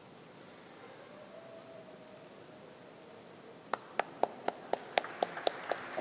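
Faint hum of a large hall, then about two thirds in scattered handclapping starts up, separate sharp claps about three or four a second and quickening.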